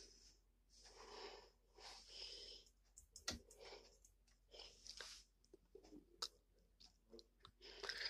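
Near silence with the microphone switched off: only a few faint, brief rustles and clicks, like handling of the phone.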